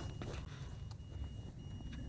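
Faint, high, steady electronic tone from the micro quadcopter's beeper, sounding in long stretches broken by short gaps, over a low rumble. The beeper is left sounding after landing because of how it is set up on the mode switches.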